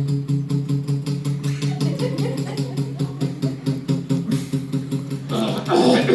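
Acoustic guitar strummed quickly and evenly on one chord, with a steady low note ringing underneath; the strumming stops about five seconds in.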